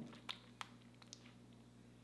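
Faint, moist lip clicks from lips pressing and parting to spread freshly applied lip gloss, a few soft smacks about a third of a second apart early on, then one more just after a second, over a low steady hum.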